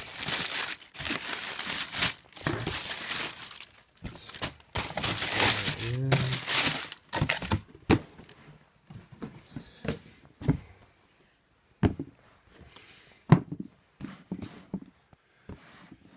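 Tissue paper crinkling and rustling as hands dig through a sneaker box, dense for about the first eight seconds. After that come scattered short knocks and taps of the cardboard box and shoes being handled, with one sharp knock near the end.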